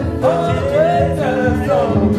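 Gospel music: a singing voice with sliding, held notes over a steady instrumental backing.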